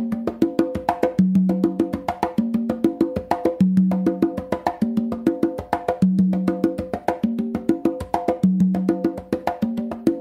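Congas played by hand in a mambo tumbao, a repeating pattern of open tones and slaps, with a longer, deeper open tone on the lowest drum (the tumba) about every two and a half seconds. A fast, steady clicking beat runs underneath.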